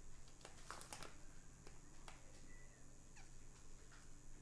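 Faint crunching of a Flamin' Hot Cheeto being nibbled: a few crisp clicks in the first second, then scattered softer ticks. Two brief faint high squeaks come in the second half.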